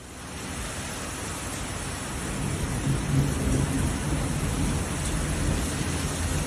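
Storm wind and heavy rain: a steady rushing noise that builds over the first couple of seconds, with a deeper rumble around the middle.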